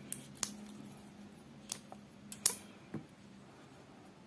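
A few light clicks and taps from hands handling tatting thread and picking up a small steel crochet hook. The sharpest is a close pair about two and a half seconds in, over a faint steady hum.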